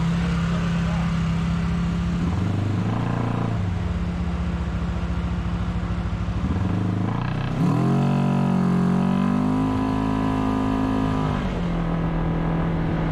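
Side-by-side UTV engine running steadily, then revving up about seven and a half seconds in and holding the higher speed for a few seconds before dropping back.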